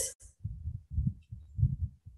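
Low, muffled thumps, about two a second and uneven, picked up by the microphone during a pause in speech.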